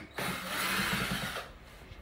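A rubbing, scraping noise lasting a little over a second, typical of a phone's microphone being handled as the camera is swung around.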